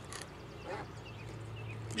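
Quiet background with a steady low hum and a few faint, short chirps about a second in.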